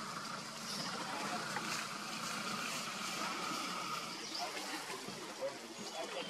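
Indistinct, quiet talk from several people over a steady background hiss; no words can be made out.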